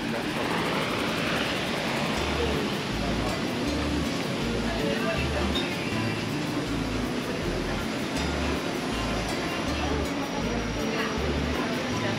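Background music with a steady, repeating bass line over the even hubbub of a busy street, with people's voices in the mix.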